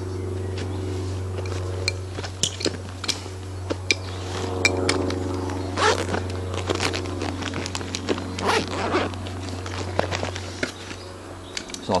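Rustling, scraping and clicking of camping kit being handled and pulled out of a backpack, with zip sounds from its pouches. A steady low hum runs underneath and stops near the end.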